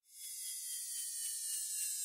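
A swell of high hiss, added in editing, that grows louder out of digital silence, with faint tones sliding slowly downward; it leads straight into loud background music.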